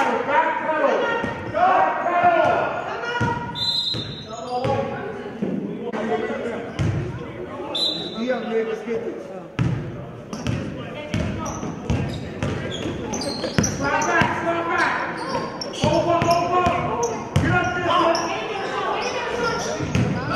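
A basketball dribbled on a gym floor, bouncing repeatedly, against voices of players and spectators calling out throughout, echoing in the hall.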